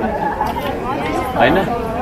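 A man speaking Nepali, with people chattering around him.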